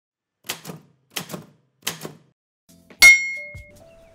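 Three quick typewriter key clacks about two-thirds of a second apart, then a louder strike with a ringing bell ding, like a typewriter's carriage-return bell: an intro sound effect.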